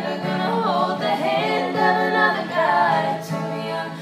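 Mixed male and female voices singing a country ballad together in harmony, accompanied by a strummed acoustic guitar.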